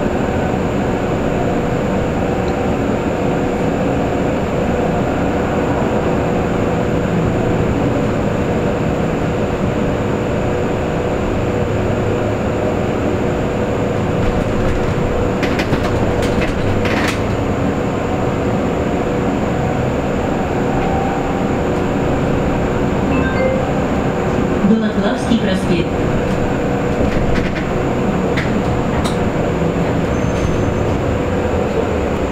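Cabin noise inside a KAMAZ-6282 electric bus on the move: a steady rumble of road and tyres with a steady hum under it. A few short clicks and rattles come about halfway through and again a little later.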